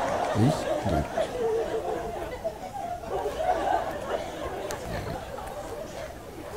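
Speech only: a man's voice at the start, then quieter talk and chatter that fade toward the end.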